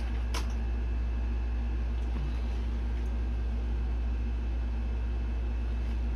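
Steady low background hum, like a fan or electrical hum, with one faint click shortly after the start.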